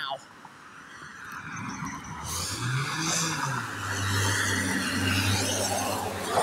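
Road traffic: car tyres on asphalt and engine hum growing louder as a vehicle approaches and passes close by, with a steady low engine note over the last couple of seconds.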